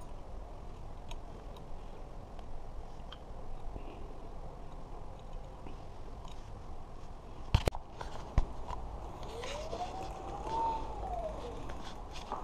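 Small metal clicks and knocks of hand tools working the brake disc bolts on an e-bike hub motor, with two sharp clicks a little past the middle. Near the end a single tone rises and then falls over about two seconds.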